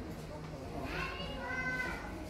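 A child's high voice calling out for about a second, starting near the middle, over the murmur of a busy shop floor.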